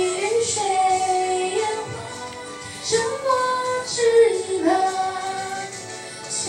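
A teenage girl singing a Mandarin pop ballad into a handheld microphone, holding long notes that slide from one pitch to the next.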